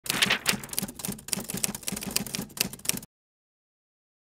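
Typewriter-style key clacking as an intro sound effect, rapid strokes at about six a second, cutting off suddenly about three seconds in.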